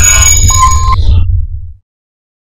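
Electronic outro sound effect for a TV segment: a sustained low rumble with high ringing tones and a short steady beep about half a second in. It fades and stops shortly before the end.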